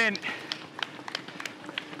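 Footfalls of a pack of racing runners: light, irregular slaps of running shoes, several a second, over a low outdoor hiss.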